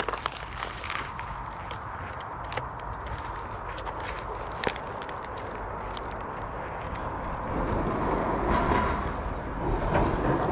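Steady outdoor background noise with a few light clicks and rustles in the first half; the noise swells for a couple of seconds near the end.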